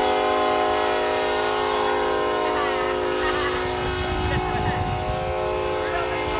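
Train horn sounding one long, loud, steady chord of several notes held together, with faint voices underneath.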